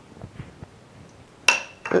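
A bullroarer being swung on its cord without getting up to its whirring sound: faint handling noise, then a single sharp clink with a short ringing tone about one and a half seconds in, as it knocks against something.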